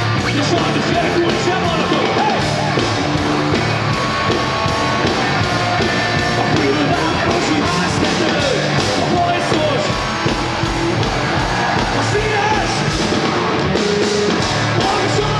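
Live punk rock band playing loudly through the PA, with electric bass, drums and a sung vocal line over them.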